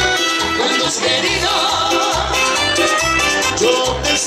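Live dance band playing an upbeat dance song, with a steady, evenly pulsing bass beat under the melody.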